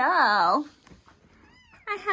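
A brief sing-song human voice at the start, then a faint, high, short mew from a small kitten about one and a half seconds in.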